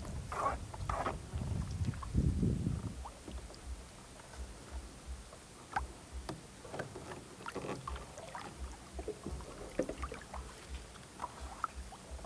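Cast net being hauled in by its rope from a small boat: faint scattered knocks and water sounds over a low steady rumble, busier in the first few seconds.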